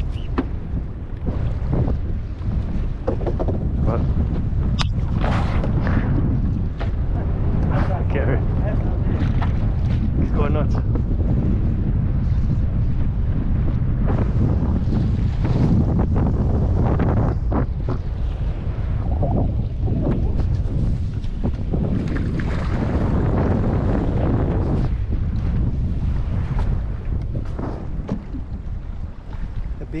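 Wind buffeting the microphone over choppy water, with waves slapping and knocking against the hull of a small aluminium fishing boat.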